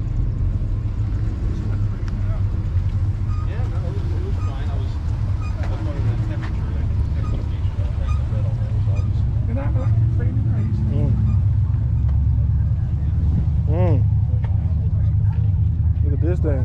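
Voices of people talking in the background, in short scattered snatches, over a steady low rumble.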